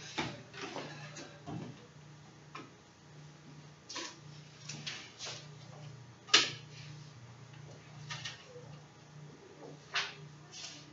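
Dry-erase marker writing on a whiteboard: short scratchy strokes, with one sharper tap about six seconds in, over a steady low hum.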